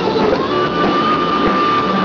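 Live rock band playing loud, with electric guitars and drum kit. A single high note is held steady from about half a second in until near the end.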